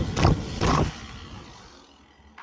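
Rushing ride noise on a mountain bike's action camera, with two short louder bursts in the first second. It cuts off abruptly about a second in and trails away to quiet.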